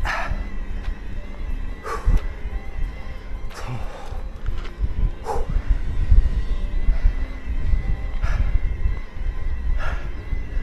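Riding noise from a moving electric mountain bike: a steady low rumble of wind on the camera microphone and the tyres on the trail. A faint steady whine runs under it, with brief sharper scrapes or squeaks every second or two.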